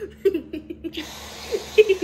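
Aerosol can of whipped cream spraying: a steady hiss begins about a second in and keeps going. A small child giggles in short bursts throughout.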